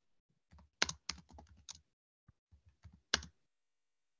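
Typing on a computer keyboard: a quick run of about a dozen keystrokes, a pause, then a few more keys near the end, picked up by a video-call microphone.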